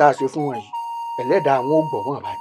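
A man's voice, with a pause about halfway through, over background music of sustained chime-like electronic tones.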